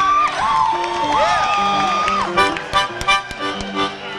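Audience whistling and cheering: several gliding, rising-and-falling whistles overlap, then scattered hand claps join in about halfway through.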